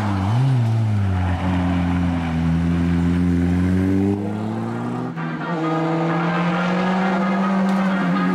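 A car engine pulling hard out of a hairpin on an Audi A3-series hatchback: the note dips briefly, then climbs steadily as it accelerates. About five seconds in, the sound switches abruptly to another car's engine holding a steadier note.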